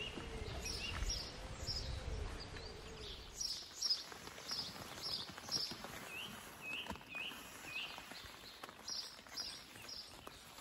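Small songbird giving short chirps over and over, about two a second, some of them rising in pitch. Low wind rumble on the microphone during the first three seconds.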